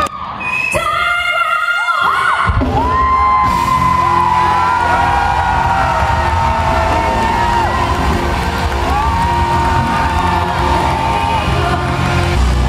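Live band music through a concert sound system, with bass and drums coming in about two and a half seconds in, a singer holding long notes over it, and a crowd cheering and whooping. Recorded from within the audience.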